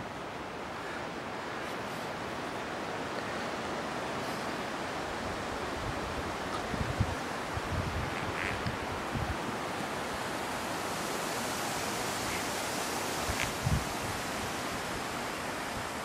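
Steady rushing noise of wind over a handheld camera's microphone during a walk, with a few brief low thumps in the middle and near the end.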